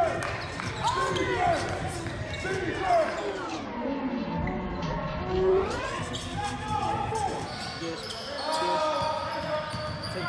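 Indoor basketball game on a hardwood court: the ball bouncing as players dribble, sneakers squeaking in short sharp chirps, and voices calling out from the sidelines, all echoing in a large gym.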